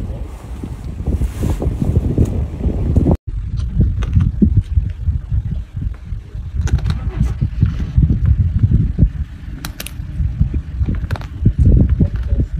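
Wind buffeting the microphone: a loud, irregular low rumble with no steady tone, broken by a sudden cut about three seconds in.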